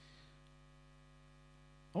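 Faint, steady electrical mains hum in the sound-system feed, a low buzz with a stack of even overtones that holds unchanged; a man's voice cuts in right at the end.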